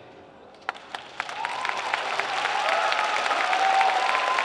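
Audience applause at the end of a song: a few single claps about a second in, then clapping that swells into full, steady applause, with some voices calling out over it.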